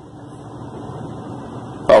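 Low, steady background noise with no distinct events. A man's voice starts speaking just before the end.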